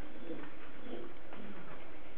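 Steady background hiss of a lecture recording, with a few faint, low wavering sounds.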